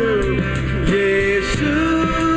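Male voice singing a Hindi worship song in long held, sliding notes, backed by a live band of acoustic and electric guitar, bass guitar and keyboard.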